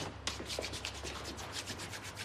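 Hands rubbed briskly together, palm against palm, in a rapid run of short strokes.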